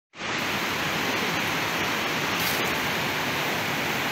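Steady rushing of a swollen, muddy river in flood.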